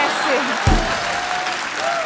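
Studio audience applauding, with voices over the clapping and a single low thump about two-thirds of a second in.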